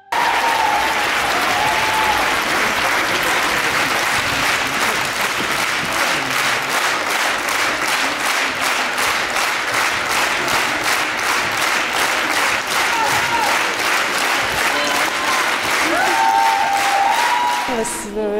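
A theatre audience applauding a curtain call; from about five seconds in the clapping falls into a steady rhythm in unison, roughly three claps a second, with a few voices calling out over it.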